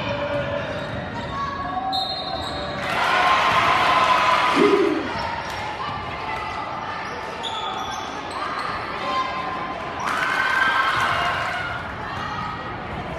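Gymnasium sound of a basketball game: a ball dribbling on the hardwood court, sneakers squeaking, and players and spectators calling out. The voices swell louder twice, about three seconds in and again about ten seconds in.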